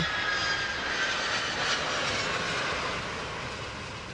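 Jet airliner flying past low, its engine noise a steady rush with a faint high whine that slowly fades away.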